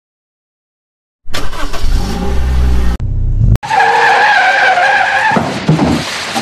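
Cartoon car sound effect: after a second of silence, a car engine revs loudly for about two seconds, breaks off suddenly, and tyres then screech with a wavering high squeal.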